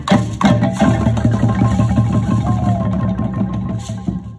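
An ensemble of wooden xylophones played together in a fast, busy pattern of struck notes over a steady low bass, getting gradually quieter toward the end.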